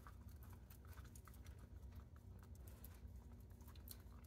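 Faint, irregular clicking of a small dog licking the metal ball-valve spout of a water bottle hung on a pet crate, several light ticks a second over a low room hum.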